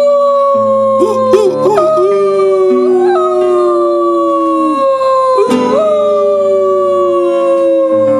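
Voices howling like wolves: long held howls sliding slowly downward in pitch, two overlapping, over low sustained guitar notes.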